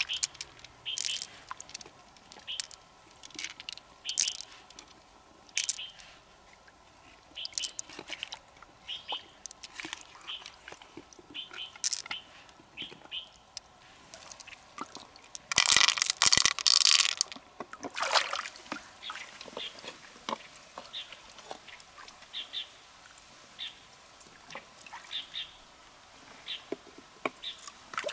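River mussel shells being handled and worked: a string of short clicks and scrapes, with a louder rush of water for a second or two about sixteen seconds in.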